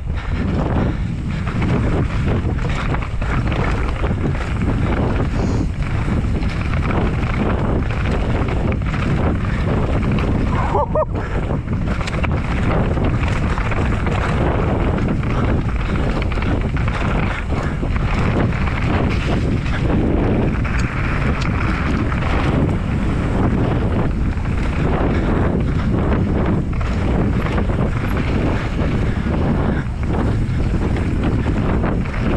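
Mountain bike ridden fast down a rough dirt trail: wind rushing over the camera microphone over the rolling of the tyres, with a steady stream of knocks and rattles as the bike hits roots and rocks.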